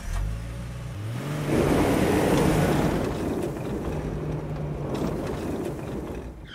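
A car engine running low, revving up in pitch about a second in and pulling away, with a louder rush of the moving car for a couple of seconds before it settles to a steadier hum.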